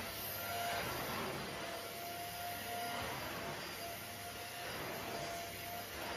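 Vacuum cleaner running with a steady rushing noise and a faint whine that comes and goes, its floor head drawn across a pile rug.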